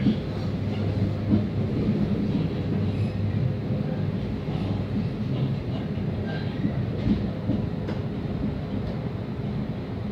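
MAX light-rail car running along the track, heard from inside the car: a steady low rumble of wheels on rails, with a few light knocks.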